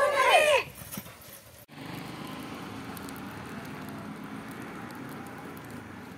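Protesters' voices chanting loudly, ending abruptly under a second in. After a short lull, steady outdoor background noise with faint light ticks.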